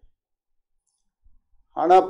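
Near-total silence in a pause in a man's speech, with only a few faint ticks. His voice comes back near the end.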